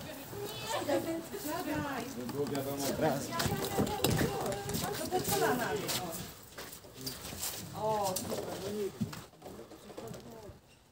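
Indistinct voices of several people talking at a distance, with a few knocks about four seconds in.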